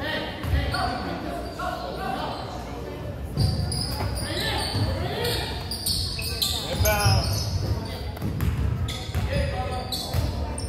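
Basketball bouncing with scattered low thuds on a hardwood gym floor, with voices calling around the court, in a large echoing gym. A short high squeal comes about seven seconds in.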